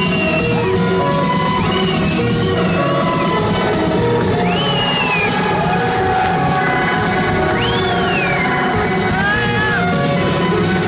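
Live electronic dance music played loud through a club sound system: a steady, dense bass and beat under a synth lead whose notes glide up and down in pitch, in several separate phrases, with a stack of gliding notes near the end.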